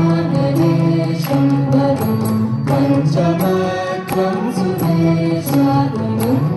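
A large ensemble of veenas playing a Carnatic kriti in unison: steady plucked strokes with held notes that slide between pitches, with voices singing the melody along with the veenas.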